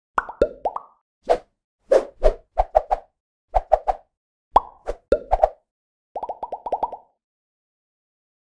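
Short cartoon-style pop sound effects of an animated logo intro, coming in small clusters, several with a quick slide in pitch. They end about seven seconds in with a rapid run of about seven pops.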